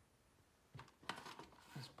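Near silence, then a few faint, short clicks and rustles in the second half, from handling the box and its power cord.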